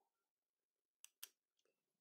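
Near silence, broken by two faint short clicks about a second in, a quarter-second apart: a metal spoon knocking against the bowl while rice flour is scooped and tipped out.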